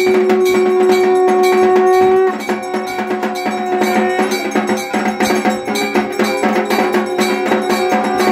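Temple bells struck rapidly and continuously for an aarti, a dense metallic clanging over a steady ringing tone that weakens abruptly about two seconds in.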